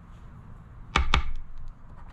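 Two quick, sharp taps about a second in: a casino chip knocked against a scratch-off ticket lying on a table, just before scratching begins.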